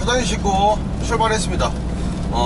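Steady low drone of a 5-ton truck's engine and road noise heard inside the cab while driving, with a man's voice speaking over it in short phrases.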